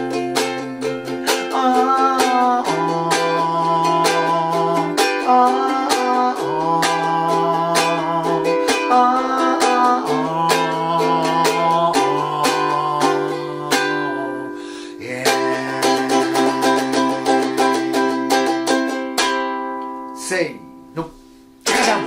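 Ukulele strummed in a chord progression through G7 and Em7, with a man singing long held 'oh oh' notes over it. Near the end the strumming stops and the last chord rings out and fades.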